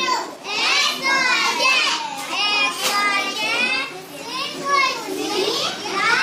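Several young children's voices at once, the high-pitched voices of small pupils in a classroom.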